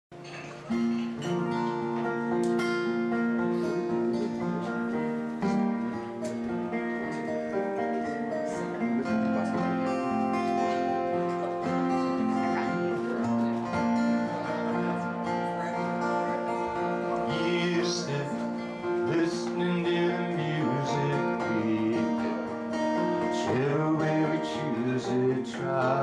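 Two acoustic guitars playing a folk song's instrumental introduction, coming in about a second in.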